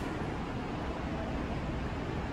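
Steady low background noise with no distinct events.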